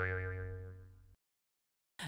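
A cartoon-style 'boing' transition sound effect: a low twanging tone with a wavering upper note that fades and cuts off about a second in.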